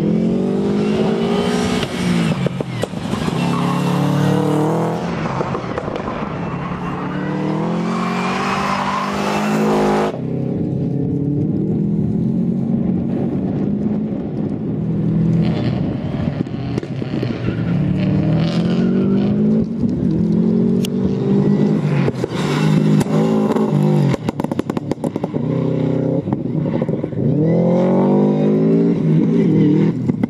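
Subaru Impreza rally car's flat-four engine revving hard, its note climbing and dropping again and again as it accelerates out of and lifts into tight corners.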